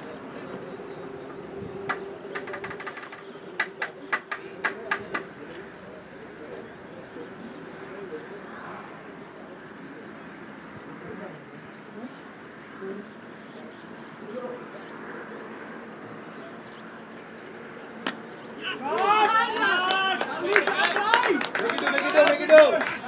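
A cricket ball struck by the bat with one sharp crack, then several players shouting loudly as the batsmen run and one dives into his crease. Earlier, a quick run of sharp clicks, and faint high bird chirps.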